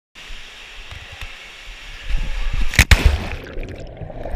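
Water noise with low rumbling on the microphone, broken by two sharp knocks close together a little under three seconds in.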